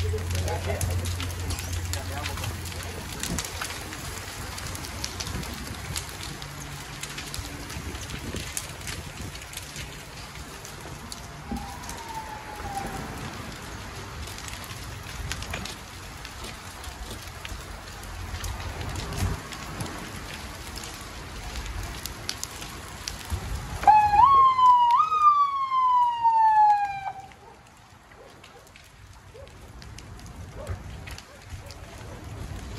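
A burning RV, the fire crackling and popping steadily. About 24 seconds in, an emergency vehicle's siren sounds loudly: two quick rising whoops, then a long falling wind-down lasting about two seconds.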